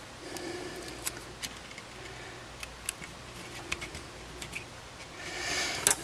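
Light scattered clicks and ticks of steel tweezers and fingertips working on an opened compact camera's metal frame and ribbon-cable connectors while small cover tapes are pressed back on. A brief hiss comes just before the end.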